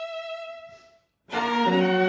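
String quartet playing: a single high violin note held and fading out about a second in, then after a brief silence all the instruments come in together, louder, with a low string line underneath.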